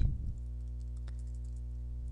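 Computer keyboard typing: a few light keystroke clicks over a steady low electrical hum.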